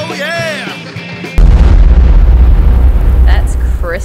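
Rock music with a singing voice, cut off about a second and a half in by a sudden, very loud, deep explosion-like boom that rumbles and slowly fades.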